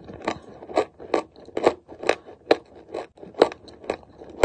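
Dry chalk being chewed close to the microphone: a steady run of sharp crunches, about two a second.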